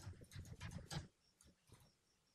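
Computer keyboard being typed on: a quick run of faint key clicks that stops about a second in, followed by a couple of single faint clicks.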